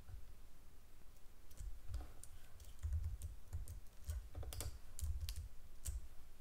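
Faint, irregular clicking and tapping of a computer keyboard: a dozen or so light clicks with dull low knocks under them, starting about a second and a half in.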